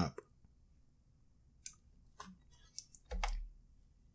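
Computer mouse clicks at a desk: a few light single clicks from under two seconds in, then a louder double click a little after three seconds.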